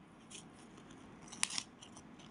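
Faint rustling and a few light clicks of a stiff picture flash card being handled by a toddler, with one sharp snip-like click about one and a half seconds in, as the card is pushed into the slot of a talking card-reader toy.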